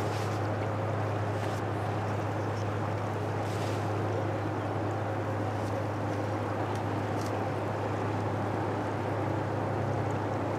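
Steady low drone of a passing Great Lakes freighter's diesel engines, carried across the water, with faint wash and ripples.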